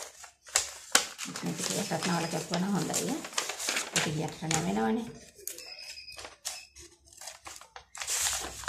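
Sheets of paper rustling and crinkling as they are handled, with a few sharp clicks near the start. A person's voice talks for a few seconds in the middle.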